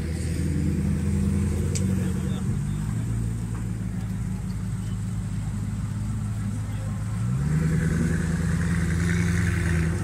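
Koenigsegg Agera RS's twin-turbo V8 running at low revs as the car moves slowly past. About seven seconds in, the engine note steps up a little as it picks up revs and grows louder.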